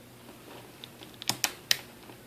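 Ab crunch joint of a Marvel Legends Homecoming Spider-Man action figure clicking as the torso is bent: a few faint ticks, then three sharp clicks in the second half.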